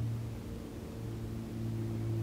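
A steady low hum with a few faint held tones above it, in a pause between spoken sentences.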